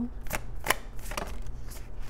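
A deck of oracle cards being shuffled by hand: about five sharp card slaps, irregularly spaced.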